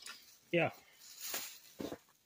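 A plastic shopping bag rustling briefly, one short hiss a little past the middle.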